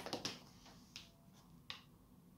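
Tarot cards being handled: a few faint, sharp card snaps as a card is drawn from the deck and laid on the spread, the sharpest one near the end.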